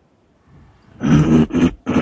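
A man's loud, wordless vocal cries over a video-call connection, three in quick succession starting about a second in.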